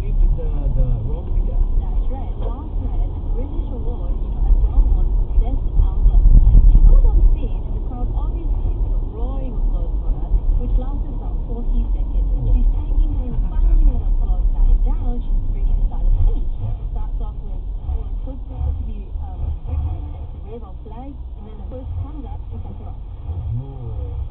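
Low road and engine rumble inside a moving car, picked up by a dashcam's built-in microphone, with muffled talk running through it. The rumble eases near the end as the car slows in traffic.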